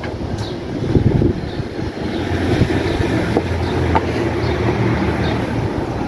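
Steady low rumbling background noise, with a few faint knocks of a power polisher and pad being handled.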